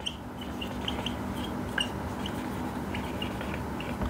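Whiteboard marker squeaking and scratching as a word is written: a run of short, high squeaks over a faint steady hiss and low hum.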